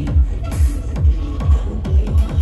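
Electronic dance music from a DJ set, played loud over a large festival sound system. A four-on-the-floor kick drum with a deep, falling thump lands a little over twice a second under synth lines and hi-hats.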